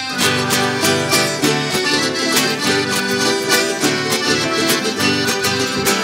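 Canarian folk band playing the caringa, a La Palma folk dance, on guitars and other plucked strings with a steady dance rhythm. The full band comes in, louder and with bass, right at the start.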